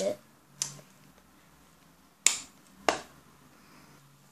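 Two sharp snapping clicks a little over half a second apart, past the middle: the gold metal clasp frame of a small wallet's coin pocket being snapped shut.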